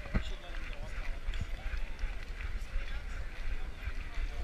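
A camera strapped to a golden retriever's back is jostled by the dog's walking steps, giving uneven low thumps and handling noise. Indistinct voices of people walking nearby sound over it.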